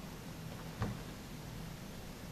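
A single soft tap a little under a second in, from small painted cardboard pieces being handled on a cutting mat, over steady low room noise.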